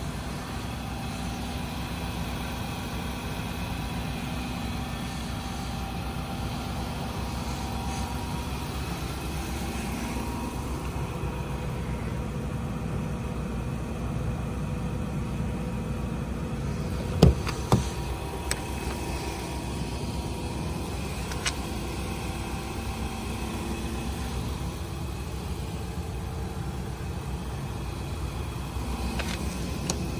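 Steady low hum of a Nissan Titan's 5.6-liter Endurance V8 idling, with a few sharp clicks about two-thirds of the way through.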